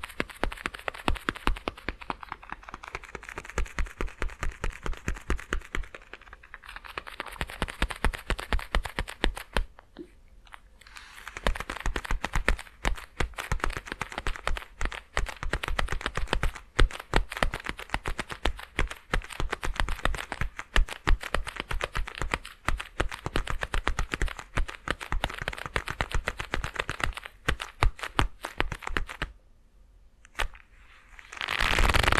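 Black leather gloves creaking and crackling as they are flexed and rubbed right beside a binaural dummy-head microphone. The result is a dense run of quick crackles that pauses briefly about ten seconds in and again near the end.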